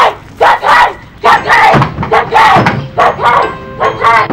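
Loud shouting voices in a rapid chant of short, repeated calls, about two a second.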